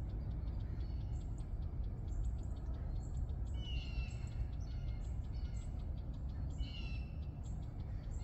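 Birds calling: quick high chips throughout and two louder calls that fall in pitch, about three and a half and six and a half seconds in. A steady low rumble runs underneath.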